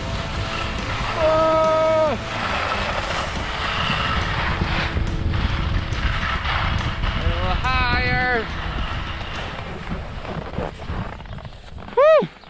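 Wind buffeting the camera microphone and skis hissing and scraping over packed snow during a downhill run, dying down near the end. Two short held vocal whoops break through, about a second in and about eight seconds in.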